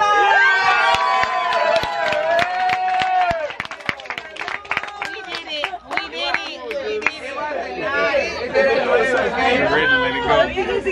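Several people squealing and yelping together in long drawn-out cries, breaking into excited chatter and laughter, as they react to electric shocks passed through their joined hands. A quick run of sharp clicks runs through the first half.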